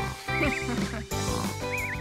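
Background music with a cartoon snoring whistle effect: a high, wavering whistle heard twice, once about half a second in and again near the end.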